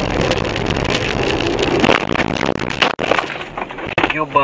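Dashcam recording of a car moving on a snow-covered street: a dense rush of engine, tyre and wind noise with scattered knocks and rattles, as the car runs off the road toward a snowbank.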